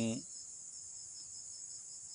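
Insects calling in a steady, high-pitched chorus that runs on without a break.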